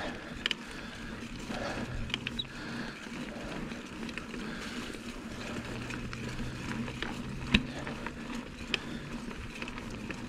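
Mountain bike rolling over a dirt singletrack: steady tyre and drivetrain noise with a few sharp clicks and knocks from the bike, the loudest about seven and a half seconds in.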